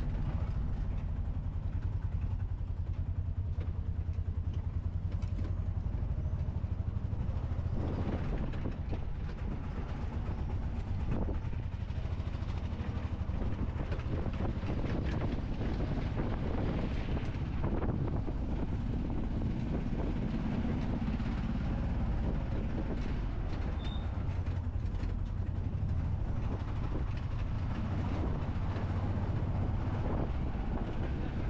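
A tuk tuk's small engine running steadily as it drives, a low rumble, with road noise and a few knocks from the cab as it rides over the street surface between about eight and eighteen seconds in.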